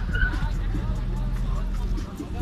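Car engines running at a drag strip, a steady low rumble, with crowd chatter over it.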